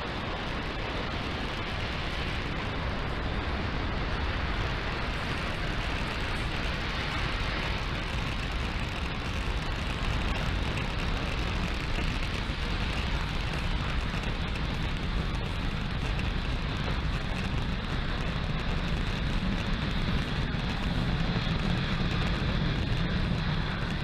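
Falcon 9 first stage's nine Merlin engines firing during ascent: a steady, dense rocket rumble, heaviest in the low end, that holds even throughout.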